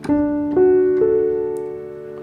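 Piano sound played from a MIDI controller keyboard: notes of a D major chord, repeated across the keyboard with both hands, come in one after another about half a second apart and ring on together, slowly fading.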